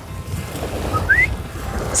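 Wind and small waves breaking on a sandy shore, a steady rushing noise, with one short rising whistle about a second in.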